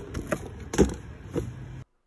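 Wet, string-bound cotton fabric being handled and set into a plastic tub: a few soft knocks and rustles over steady outdoor background noise, cutting off suddenly near the end.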